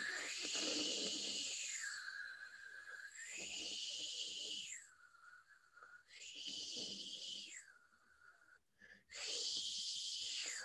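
A man making a voiceless fricative hiss with the back of his tongue, sliding it between the front palatal position (the German 'ich' sound) and the further-back velar position. The hiss swings between a higher and a lower pitch roughly every two and a half seconds, with a brief break for breath just before the last swing.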